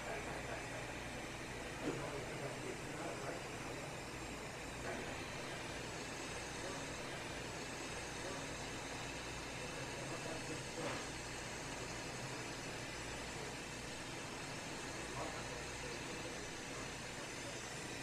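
Steady, faint machinery hum with an even hiss from a perc dry-cleaning machine, with a few soft knocks as the leak detector is worked around the valve fittings.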